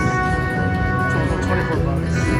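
Buffalo Gold Wonder 4 slot machine playing its free-game music and reel-spin tones, a layer of held notes that carries on steadily.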